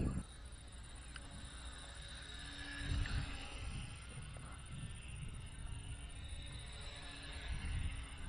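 Wind buffeting the microphone in an uneven low rumble, with a faint hum from a small RC plane's electric motor and propeller passing overhead, and a thin steady high whine throughout.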